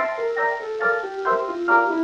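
Solo piano playing a quick, light passage of short chords, several a second, with the lower notes stepping downward.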